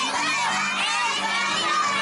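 Many young children shouting and calling out at once, with music playing underneath.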